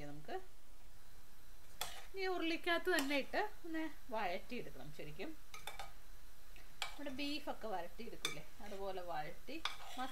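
Metal spatula stirring black chickpeas in a metal pan, scraping with a squeaky, wavering ring and knocking against the pan about six times.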